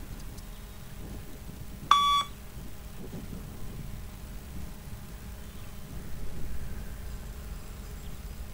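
A single short electronic beep from the Luc Léger 20 m shuttle-run test recording, about two seconds in. The beep marks the pace: the runner must reach the line by each beep.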